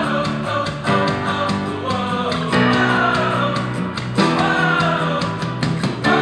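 A rock song with guitar, a steady beat and vocals, played through the OASE S3 Bluetooth speaker's two stereo drivers as a sound test and picked up by a microphone in the room.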